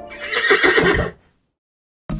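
Horse whinny sound effect: one loud neigh of about a second that cuts off sharply.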